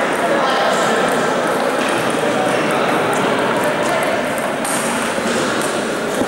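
Table tennis ball clicking in sharp, separate ticks off bats and the table, over a steady babble of many voices in the hall.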